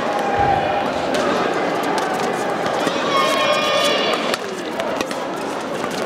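Echoing indoor badminton-hall ambience: background voices and chatter, a few sharp knocks, and a high squeak about three seconds in.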